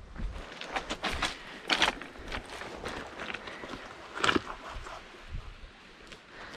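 Footsteps on a beach of loose rounded pebbles and cobbles: irregular crunches and clacks of stones shifting underfoot.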